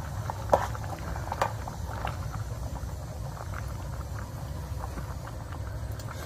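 Doenjang stew bubbling at a boil in a metal pot, with irregular pops, the sharpest about half a second in and another near a second and a half, over a steady low rumble.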